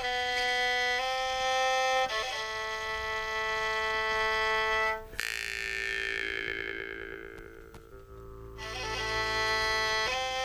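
A bowed folk fiddle holds long steady notes, stepping between pitches. About five seconds in, a Yakut khomus (jaw harp) takes over: a fixed drone with a bright overtone sweeping slowly downward. The fiddle comes back in near the end.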